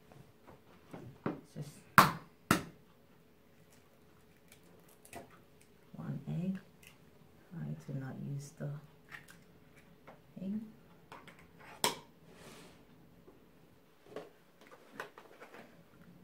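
An egg tapped sharply against the rim of a ceramic bowl and broken open into it. The loudest knocks come about two seconds in, a pair half a second apart, with another sharp knock near the end.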